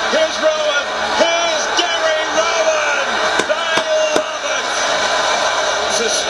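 Australian rules football broadcast audio playing: raised, drawn-out voices over stadium crowd noise, with three sharp knocks in quick succession midway.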